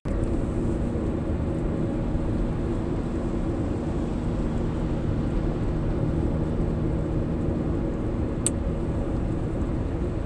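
Steady engine and road noise heard inside a car's cabin while cruising at highway speed, with one short tick about eight and a half seconds in.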